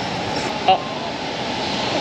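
Steady city street traffic noise, with a single short spoken syllable about two-thirds of a second in.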